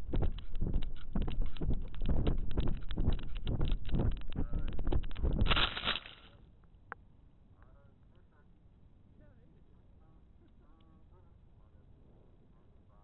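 Gusty wind buffeting the onboard camera's microphone on a descending model rocket, a loud, rapid, choppy rush. About five and a half seconds in there is a brief loud crash as the rocket lands in a bush, and the sound drops away abruptly to faint background with a single click and a few faint chirps.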